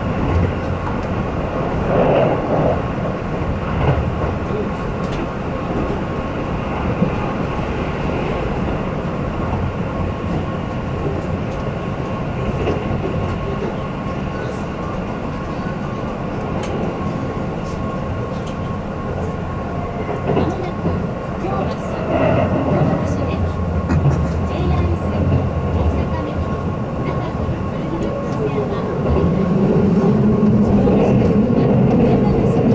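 Keihan electric train running at speed, heard from inside the passenger car: a steady rumble of wheels on rail and running gear that gets louder near the end.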